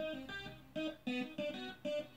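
Recorded music with a line of short plucked notes, about three a second, played over speakers driven by a homemade 60-watt stereo amplifier.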